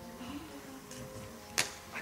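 Quiet hall ambience with a faint steady hum, broken by one sharp click about one and a half seconds in.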